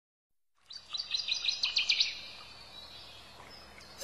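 A songbird chirping in a fast run of high, sharp notes for about a second and a half, fading into faint outdoor ambience.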